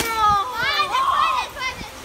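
Several children yelling and cheering at once, their high excited voices overlapping.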